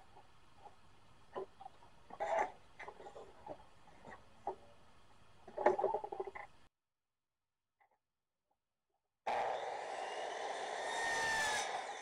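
Faint clicks and knocks of trim being set on the miter saw, then a short stretch of dead silence. About nine seconds in, a Hitachi C10FCE 10-inch compound miter saw starts up abruptly with a steady motor whine that swells and then fades near the end.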